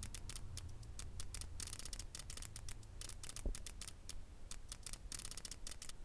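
Flip clock's split-flap cards flipping over in quick runs, a rapid, irregular clicking that comes in clusters as the minutes advance. There is a brief low thump about halfway through.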